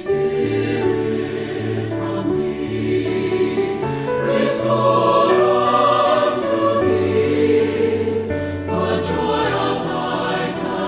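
Four-part mixed choir singing a slow sacred anthem in sustained chords, with piano accompaniment; the sound swells louder in the middle of the passage.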